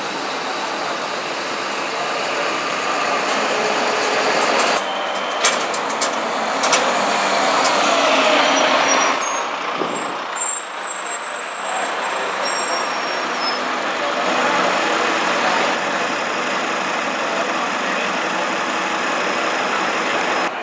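City buses running and moving slowly through a bus station: first a single-decker and then a double-decker drive forward. A few short, sharp hisses or clicks come about five to seven seconds in, and the engines are loudest around the eight-second mark.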